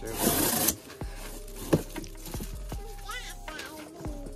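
A cardboard box being unpacked by hand: a short tearing noise at the start, then rustling of packing material and a few knocks and clicks against the cardboard.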